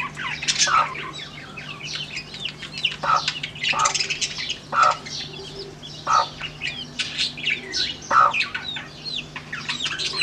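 Newly hatched chicks peeping nonstop, a dense stream of short, high, falling chirps, while the brooding hen gives a short low cluck now and then, about five times.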